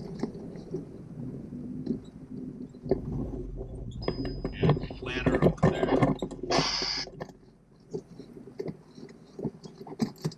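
Cabin noise of a vehicle creeping over a dirt campground track: a low engine and road rumble with knocks and rattles. It grows louder and busier from about three seconds in, then the rumble drops away about seven seconds in.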